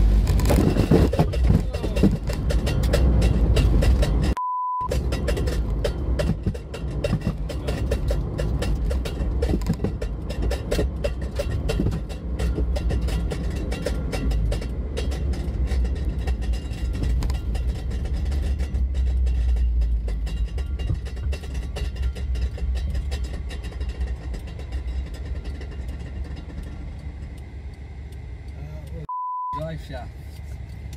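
Car driving at speed heard from inside the cabin: steady engine and road rumble. A short beep comes about four and a half seconds in, and another just before the end.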